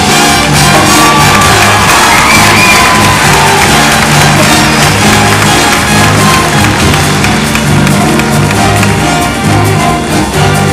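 Jazz big band coming back in after a drum solo, with electric bass, saxophones and drum kit playing together. The audience cheers and whoops over the first few seconds.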